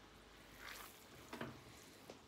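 Faint sizzling of honey boiling down to caramelise in a stainless steel pot, with a spoon stirring and scraping across the pot's bottom.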